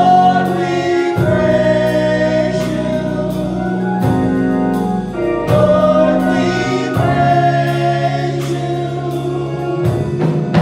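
Gospel singing: three women's voices in harmony holding long notes, over steady low instrumental notes and a light regular beat.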